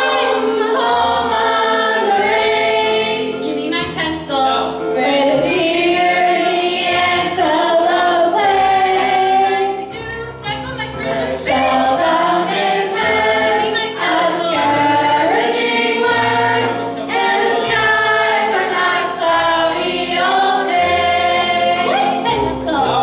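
A stage cast of teenage boys and girls singing together as a choir, with several voices carrying the tune at once.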